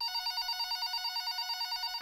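Telephone ringing with a rapid, even electronic warble: an incoming call, answered right after the ringing.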